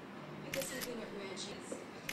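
Smartphone camera shutter sound: a few short, quick clicks as photos are taken.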